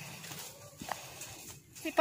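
Footsteps on dry leaf litter, with a few light clicks spread over the two seconds; a voice starts right at the end.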